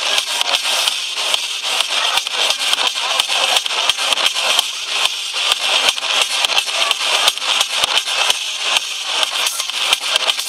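Dance music played loud over a club sound system, with a steady kick drum about twice a second. It is recorded on a phone in the crowd, so it sounds distorted and thin, with the bass missing.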